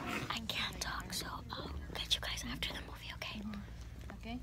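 Whispered speech close to the phone's microphone, soft and breathy, over a faint steady low hum.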